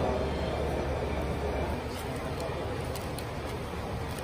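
Indistinct voices of the emergency crew working over a casualty, with a steady low vehicle rumble underneath that is heaviest in the first second or so.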